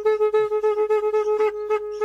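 Instrumental music: a wind instrument plays a quick, ornamented melody over a steady held drone note.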